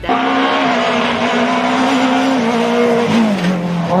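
Renault Clio rally car's engine held at high revs over loud rushing tyre-on-gravel noise; the engine note drops a little past three seconds in as the revs fall.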